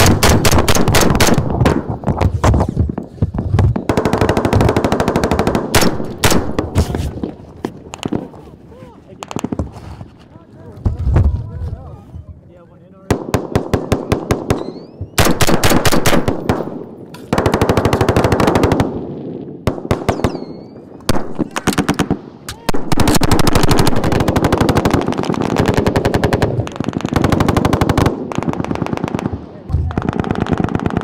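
Close automatic gunfire in a firefight: rapid bursts from rifles and machine guns, long runs of shots broken by a quieter lull about eight to thirteen seconds in and a shorter one about twenty seconds in.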